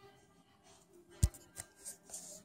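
Handling noise from a phone being moved around by hand: one sharp knock a little over a second in, followed by a few lighter clicks and rustles.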